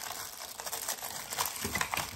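Clear plastic packets of metal cutting dies crinkling as they are handled, a dense run of small irregular crackles.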